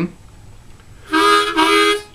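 Diatonic harmonica in the key of A, held in a neck rack, sounding a short chord about a second in, in two quick breaths with a brief break between them.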